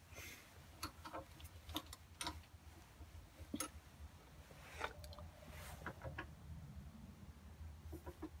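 Faint, irregular clicks and light taps of small metal and wooden pen parts being handled by hand as a pen transmission is fitted into the barrel.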